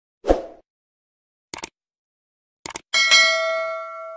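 Outro sound effects for a subscribe-button animation: a short thump, two quick clicks, then a bright bell ding that rings on and fades.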